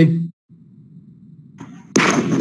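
A man's word ends, and the video-call audio drops out completely for a moment. Then a low steady hum of line noise runs until a sudden loud burst of noisy sound cuts in at the very end.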